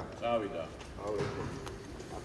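A voice speaking a short phrase near the start, then quieter voices, with a few light knocks.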